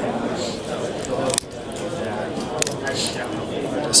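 Busy exhibition-hall ambience of many people talking in the background, with a few sharp clicks from a long-nosed utility lighter being sparked to light a fuel-soaked cotton swab.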